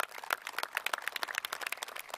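Light applause: hands clapping, with the separate claps coming quickly and distinct from one another rather than merging into a roar.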